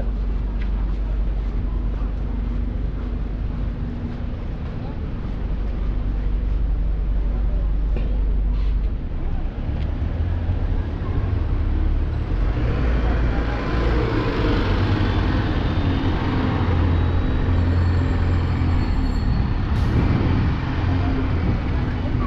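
Town-centre street traffic with a bus engine running close by, a low steady rumble. A broader hiss of traffic builds from about halfway through.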